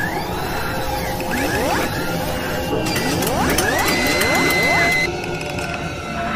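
Sound effects for an animated logo intro: repeated rising whooshes that sweep up in pitch, mechanical clicking and whirring, and a held high tone that cuts off suddenly about five seconds in.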